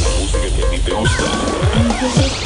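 Loud electronic dance music over a sound system, in a break: the fast kick drum drops out for a deep bass rumble, then sweeping effects play and the kicks start to come back near the end.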